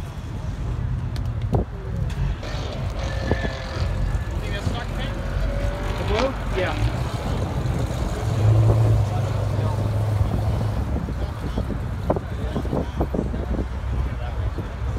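A car engine running nearby, a low steady rumble that swells for about two seconds past the middle, under faint background voices.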